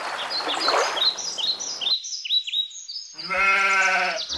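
Small birds chirp in quick repeated calls over a steady rushing noise, which cuts off about halfway. Near the end a sheep bleats once, a long wavering call.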